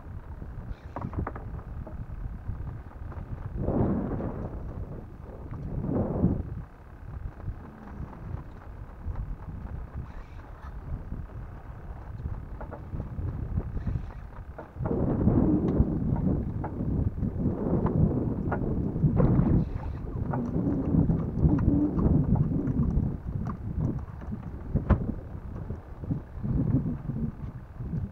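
Wind buffeting the microphone and sea water sloshing against the hull of a small open boat, an uneven low rumble that swells twice early on and turns louder and rougher about halfway through.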